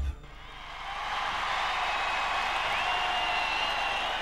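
Live audience applauding and cheering as a song ends; the applause swells over the first second and then holds steady, with a high steady whistle over it in the second half.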